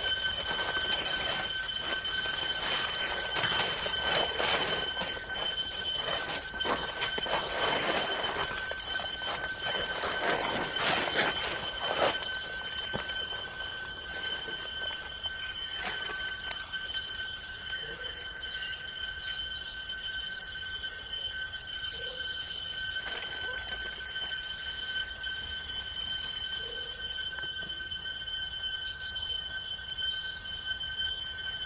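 Dry fallen leaves rustling and crunching as macaques move through them, busiest in the first twelve seconds, over a steady high-pitched insect whine that carries on throughout.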